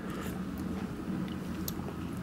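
Faint mouth sounds of someone tasting a sauce off a spoon: a few soft smacks and clicks over a steady low kitchen hum.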